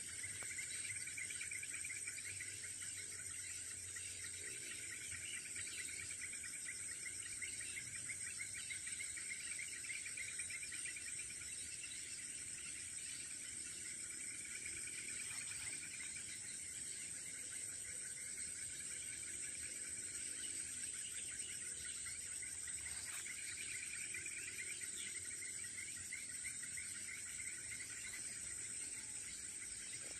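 Forest insects calling steadily: a high, even whine over a lower, rapidly pulsing trill that grows stronger and weaker every few seconds.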